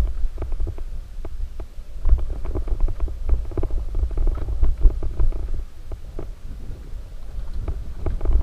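Mountain bike rolling fast down a rocky dirt singletrack: a constant low rumble of tyres on dirt, with frequent quick knocks and clicks as the bike rattles over rocks and ruts. The sound is muffled, as recorded by a defective GoPro.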